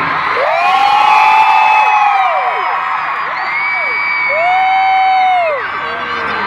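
Large stadium crowd cheering and screaming, with nearby fans letting out long high-pitched screams that rise and fall, the loudest starting about half a second in and again about four seconds in.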